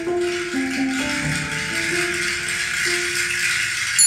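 Recorded music played through Monitor Audio Studio 2 bookshelf speakers in a small room: a steady rattling percussion sound over a line of plucked notes.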